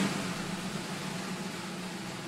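A steady rushing noise with a low droning hum, cutting in abruptly at the start and holding level throughout.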